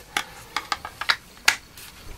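Knives and sheaths being handled on a table: a quick run of light clicks and taps, the sharpest about a second and a half in.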